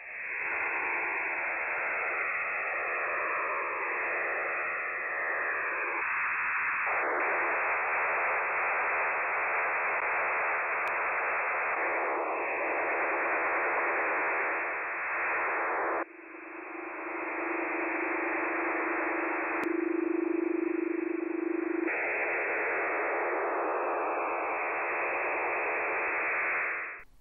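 STANAG NATO military HF data-modem transmissions received on a shortwave SDR in upper sideband: a steady rushing hiss, the airplane-like fan noise of these signals. Several different STANAG signals follow one another in abrupt cuts. In one of them a steady low tone runs under the hiss, and faint falling whistles drift through at times.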